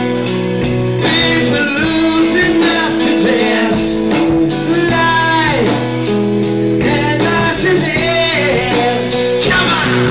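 A live rock band playing: electric guitar, drums and a male voice singing, with notes sliding down in pitch every couple of seconds.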